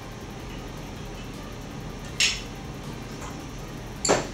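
A single sharp clink of barware about two seconds in, over faint room tone, as cherry brandy is measured in a steel jigger and tipped over ice into a glass.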